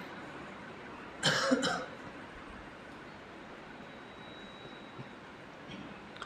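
A person coughing once, in two quick bursts about a second in, then quiet room tone.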